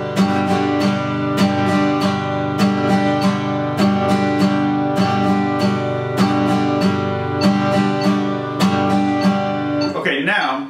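Vintage 1924 Martin 0-28 acoustic guitar strummed on one held chord in a steady, even rhythm, repeating the pattern down-up-down, down-up-down.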